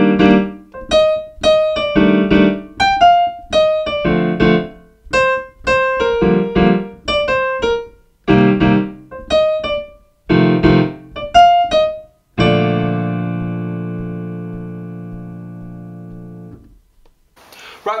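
Kawai piano playing a jazz improvisation on the B-flat major scale in short, simple phrases of a few notes over left-hand chords, with brief pauses between phrases. About two-thirds of the way through, a final chord is held and rings out, fading over about four seconds.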